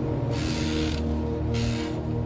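Background music with sustained low drones, overlaid by two short hissing sound effects, one about half a second in and one near the end.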